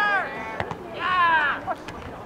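Voices shouting across a soccer field during play: two loud, high-pitched calls, one at the start and another about a second in, with a couple of sharp knocks in between and after.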